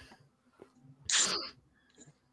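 A person sneezing once, a short noisy burst about half a second long, a second in.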